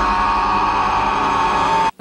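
A man's long, loud held scream at one steady pitch, cutting off suddenly just before the end.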